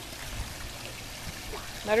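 Swimming-pool water lapping and trickling, a steady, even wash. A voice starts near the end.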